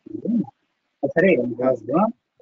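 A man's voice speaking in two short stretches, with a brief pause between.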